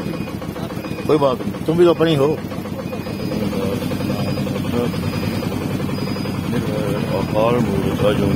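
A vehicle engine idling steadily, with voices speaking briefly over it about a second in and again near the end.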